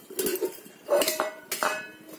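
Stainless steel utensils, a steel oil can and a steel bowl, knocking and clinking as they are handled. There are a few metallic knocks, and the later ones ring briefly.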